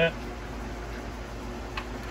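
Steady low background hum with one faint click about three-quarters of the way through.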